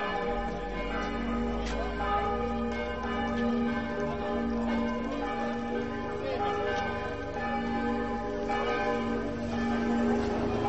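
Church bells ringing: repeated strikes whose tones hang on and overlap.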